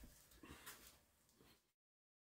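Near silence: faint room tone that drops to dead silence about three quarters of the way in.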